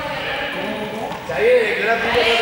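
Players' voices calling out in a large, echoing sports hall, with one louder drawn-out shout about a second and a half in.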